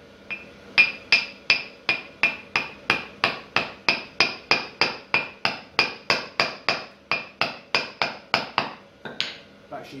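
A small hammer tapping a cast iron railhead pattern about three times a second, each blow with a short metallic ring, bedding the pattern halfway into oil-bonded casting sand. The tapping stops about nine seconds in.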